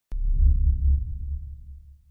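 A deep bass boom sound effect for an intro logo: it hits suddenly with a short click just after the start, then its low rumble fades away over about two seconds.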